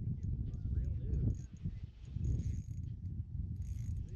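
Spinning reel being cranked while a heavy fish is played on the rod, with mechanical clicking from the reel, over a steady uneven low rumble.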